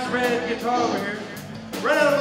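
A live band playing through amplifiers, with a solid-body electric guitar and an electric bass guitar.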